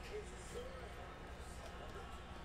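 Faint voices in the background over a steady low electrical hum.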